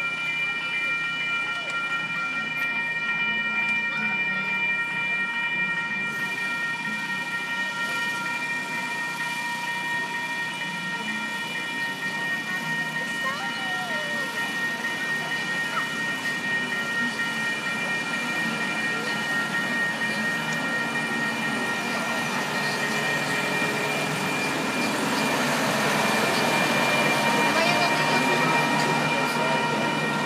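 Railroad crossing warning signal sounding steadily, a cluster of high electronic tones, while a small passenger train approaches. The train's running and wheel noise grows louder in the last several seconds as it passes the crossing.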